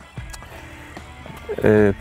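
A few faint clicks and knocks of a clear plastic bait box being picked up from a fishing seatbox; a man's voice starts near the end.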